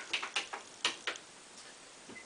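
A few faint, uneven plastic clicks from the controls of a Korg M50 synthesizer's front panel being operated, bunched in the first second or so, then quiet room tone.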